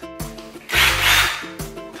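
A power drill run in one short burst of about a second, over background music.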